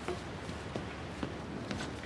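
Steady low background noise with a few faint, short taps spread through it.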